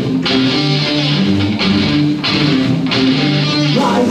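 Punk rock band playing live: electric guitar chords with bass and drums, the chord changing shortly before the end.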